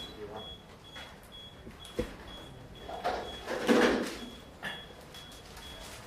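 High electronic beeping repeating about twice a second, with a sharp click about two seconds in and a loud rushing burst of noise about a second later.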